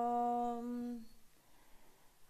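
A woman's drawn-out hesitation sound, a held "o…" on one steady pitch into a handheld microphone for about a second, as she searches for her next words. It then stops, leaving a faint room hush.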